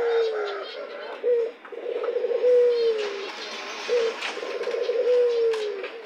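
Domestic doves cooing: a repeated low coo, a short note followed by a longer note that falls in pitch, recurring every couple of seconds.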